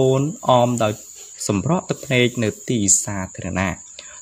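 A man narrating in Khmer, over a faint steady high-pitched whine.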